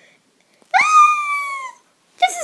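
A single high-pitched, drawn-out cry from a pet, starting about two-thirds of a second in, lasting about a second and sagging slightly in pitch at the end.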